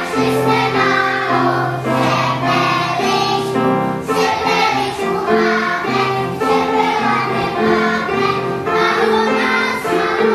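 A group of young children singing a song together in unison, in sung phrases of held notes.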